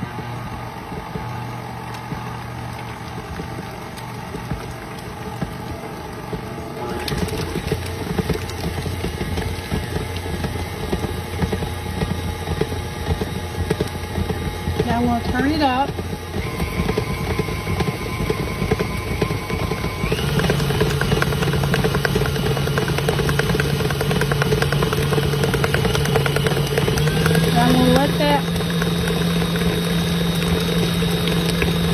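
KitchenAid stand mixer's motor running steadily as its beater whips cream cheese frosting in a steel bowl. Its whine steps higher three times: about a quarter of the way in, about two-thirds of the way in, and near the end.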